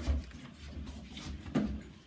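Quiet handling noise from test leads and a plug being handled: a few faint knocks and rustles, with one slightly louder knock about one and a half seconds in.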